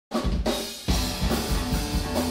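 Live punk rock band playing loudly: drum kit with repeated bass drum and snare hits under electric guitars, dipping briefly about half a second in.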